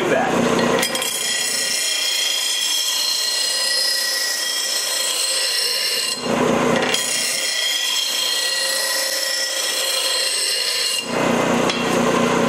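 Steel lawn tractor mower blade being ground against the wheel of a JET bench grinder: a steady hissing grind in two long passes, with a short break about six seconds in. The back of a badly worn, rounded edge is being ground down to bring it back to a sharp edge.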